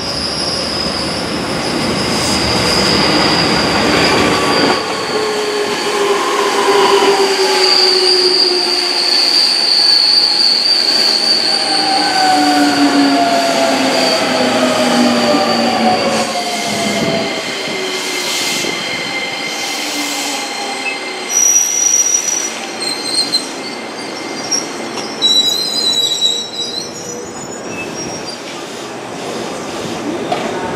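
JR 205 series 5000-subseries electric train running into a station and slowing. Its traction motors whine in several tones that fall steadily in pitch as it brakes, over rail noise and a steady high wheel squeal. The noise eases after the train passes, and short high squeals come near the end.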